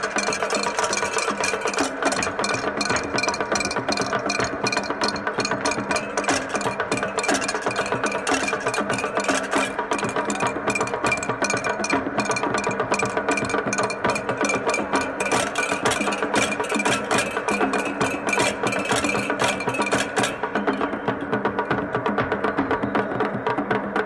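Traditional Cameroonian percussion music: a fast, dense rhythm of sharp strikes over steady pitched tones. The crisp high strikes drop out near the end while the lower tones carry on.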